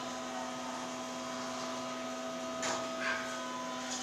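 Steady electric hum inside an Otis hydraulic elevator cab, a low drone with several steady whining tones over it, with one short faint sound about three seconds in.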